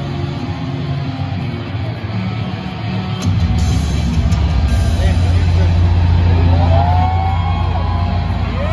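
Loud, bass-heavy music over a stadium PA, the bass swelling about three seconds in, with crowd voices and yells mixed in.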